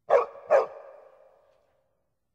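A dog barking twice, about half a second apart, the second bark trailing off in a fading ring over the next second.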